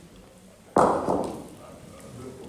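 A thrown bocce ball strikes with one loud knock about three quarters of a second in, which rings briefly and fades, with a smaller second knock just after.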